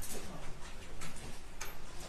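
A few sharp, light clicks over the low rustle of a courtroom.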